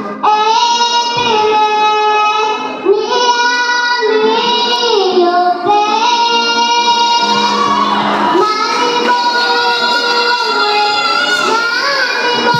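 A young girl singing an isiZulu gospel song into a handheld microphone, holding long notes that bend between pitches.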